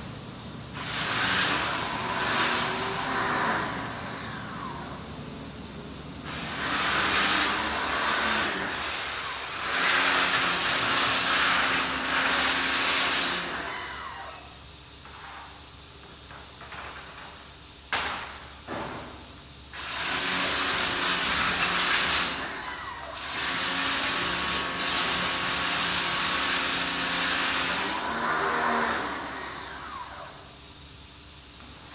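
Pressure washer spraying in three long bursts: the hiss of the high-pressure jet over a steady hum from the pump, stopping between bursts. A few short knocks in the pause between the second and third bursts.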